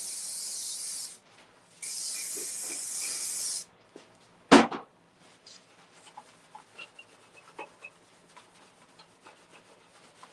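Aerosol can of SprayMax wax and grease remover spraying onto bare sheet metal in two steady hissing bursts, the second about two seconds long, cleaning a motorcycle fender before sanding. A single sharp knock follows, then faint rubbing of a rag wiping the metal.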